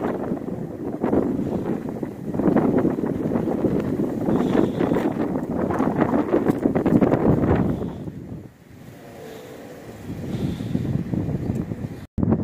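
Gusting wind buffeting the microphone in a loud, uneven rumble that eases briefly about eight and a half seconds in, then picks up again.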